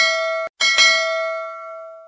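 Notification-bell chime sound effect: a bright bell ring that cuts off suddenly about half a second in, then rings again, struck twice in quick succession, and fades away.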